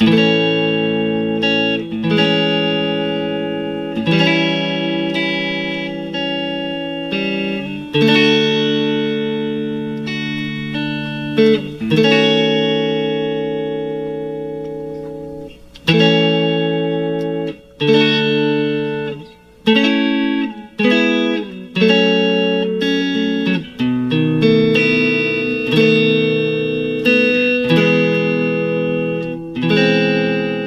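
Clean electric guitar, Stratocaster-style, playing the verse chord progression in A major (A, Amaj7, A7, D, D#m7b5, then A, E, F#m, B7, E), with notes picked out of each chord. A new chord is struck about every two seconds and left to ring and fade.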